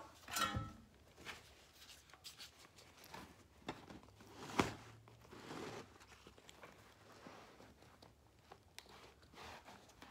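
Quiet handling sounds from carpet-seaming work: scattered light knocks and clicks, with one sharper click about halfway through, over faint background music.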